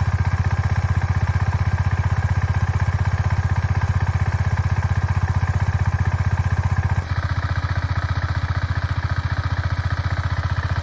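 KTM Duke 250's single-cylinder engine idling steadily while it warms up, with an even, fast pulsing beat. The sound drops slightly and turns a little duller about seven seconds in.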